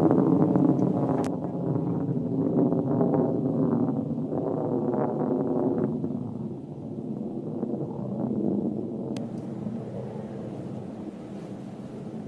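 Blue Origin New Shepard rocket's BE-3 engine at full power, heard from the ground as a low, rough rumble that fades gradually as the rocket climbs away.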